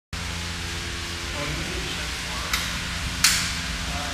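Forklift running steadily with a low drone and hiss, with two sharp knocks about two and a half and three and a quarter seconds in, the second louder.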